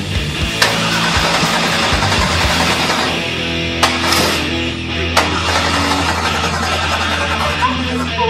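Heavy rock music playing over a stock car engine that fires about half a second in and then keeps running.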